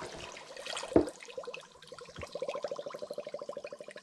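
Spring water pouring from a large plastic bottle into a stainless steel saucepan of sugar, splashing at first, with one sharp knock about a second in. In the second half the pour turns into a fast, even gurgle as air gulps back into the bottle.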